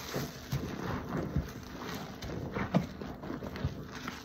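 A foam-soaked car wash sponge squeezed and kneaded in a tub of detergent suds: irregular wet squelches and bubbly pops over a hiss of foam, the sharpest squelch a little before three seconds in.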